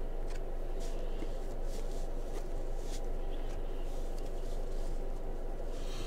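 Glossy Panini Prizm trading cards being slid one behind another in the hand, a short soft swish of card on card every second or so, over a steady low room hum.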